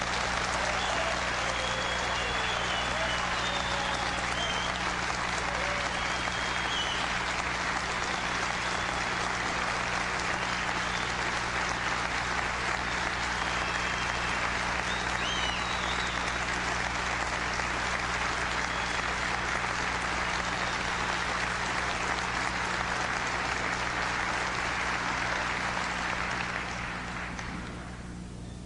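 Large indoor audience applauding steadily for nearly half a minute, the clapping dying away near the end.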